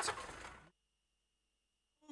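The end of a spoken word, then a short hiss of background noise fading out in under a second, and then near silence as the sound drops out completely.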